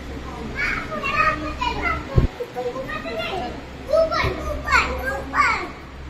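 Young children's voices chattering and calling out, with a brief low thump about two seconds in.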